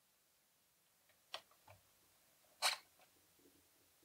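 Near silence broken by two short handling clicks from a camcorder and its shotgun microphone as they are set up for gun mode. A small click comes just over a second in and a louder one about a second and a half later.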